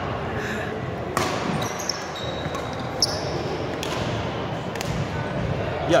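Badminton rackets striking a shuttlecock during a rally: a few sharp hits spaced a second or two apart, with short high squeaks of court shoes on the hardwood floor, echoing in a large sports hall.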